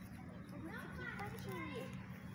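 Children's voices chattering indistinctly in the background from about half a second in until near the end, over a steady low hum.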